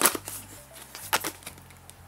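Tarot cards being shuffled and handled, giving a few sharp card snaps and taps: a cluster near the start and another about a second in, over a faint low hum.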